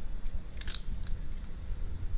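A cat crunching dry kibble, with a few sharp crunches near the middle and fainter ones after, over a steady low rumble.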